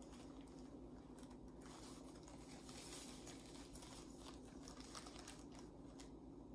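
Faint snipping of scissors cutting thin plastic sheeting, with the plastic crinkling as it is handled and turned, a little denser about halfway through.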